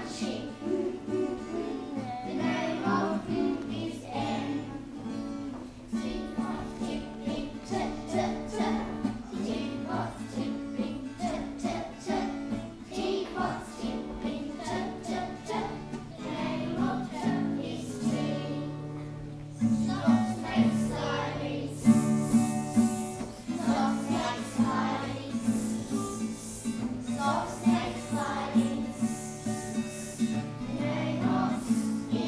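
A group of young children singing a song together, accompanied by acoustic guitar.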